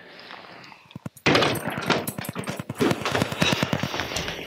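Camera handling noise: the microphone rubbing and knocking against clothing in a rapid, dense run of scrapes and knocks that starts suddenly about a second in, after a few faint clicks.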